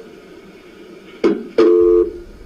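Recorded 911 call heard over a telephone line: line hiss, a sudden short noise just over a second in, then a loud steady dial tone near the end as the call is cut off.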